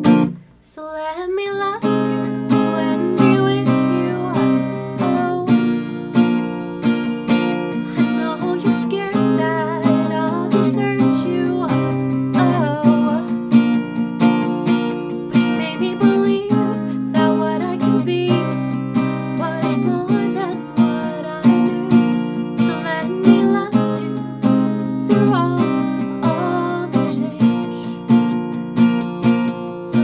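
A woman singing while strumming an acoustic guitar. The playing drops out briefly just after the start, then continues steadily.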